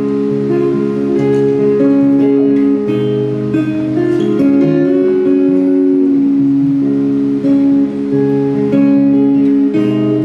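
Live band music: a strummed acoustic guitar with electric guitar and upright bass, playing held chords that change in steady steps.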